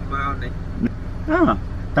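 Short bits of conversation over a car engine idling steadily, heard from inside the cabin.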